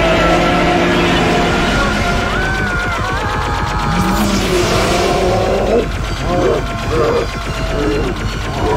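Film soundtrack: dramatic music layered with the sound effect of an energy-beam weapon. A blast sounds about four seconds in, and voices shout near the end.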